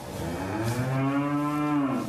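A cow gives one long, low moo that holds nearly one pitch and drops away at the end.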